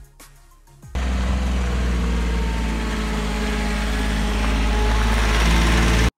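Small open-topped passenger cart's engine running steadily as it drives along, starting abruptly about a second in, with a constant rushing noise over it.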